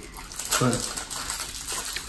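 A short, low murmur of a man's voice about half a second in, over quiet room noise.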